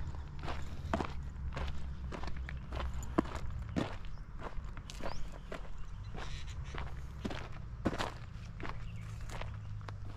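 Footsteps of a person walking on a dirt and gravel path at a steady pace, about one and a half steps a second.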